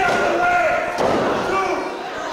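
A single sharp thud on a wrestling ring's canvas mat about a second in, under people yelling in a small hall.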